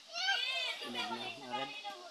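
Speech only: people talking off-microphone, first in a high-pitched voice, then in a lower man's voice.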